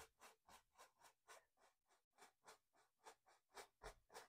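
Faint scratchy strokes of a fan brush loaded with white oil paint, dabbed quickly up and down on a canvas, about four strokes a second.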